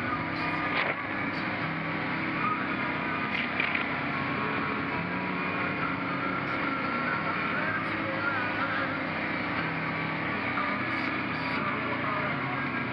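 ATV engine running steadily as it climbs and rolls along a rough, rocky dirt trail, with a few short clicks and knocks from the ride.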